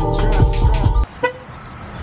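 A hip hop beat that cuts off suddenly about halfway through, followed by a single short car horn toot, then quiet outdoor air.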